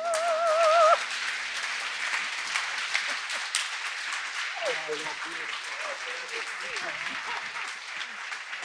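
A soprano's final sung note, held with vibrato over a sustained accompaniment chord, ends about a second in. Audience applause then fills the rest, with voices from the crowd rising under it in the second half.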